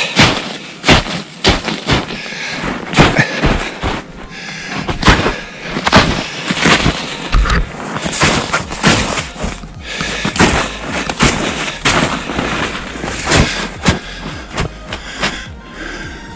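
Footsteps crunching and breaking through knee-deep snow, about two heavy steps a second.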